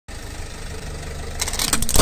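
A car engine running with a low, steady hum, then from about one and a half seconds in a quick run of sharp cracks and snaps as a small toy car is crushed under the car's tyre, loudest at the end.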